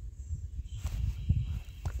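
A person's footsteps on grass and dirt: a few soft thumps over a low, steady rumble on the microphone.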